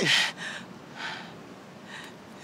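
A person's audible breaths in a pause of emotional dialogue: a sharp gasp-like intake at the start, then a softer breath about a second in and a faint one near the end.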